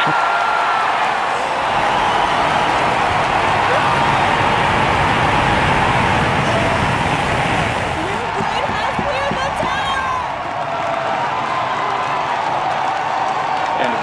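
A crowd cheering and whooping loudly through the liftoff of a Blue Origin New Glenn rocket. Under the crowd is a low rumble from the rocket's engines, strongest a few seconds in.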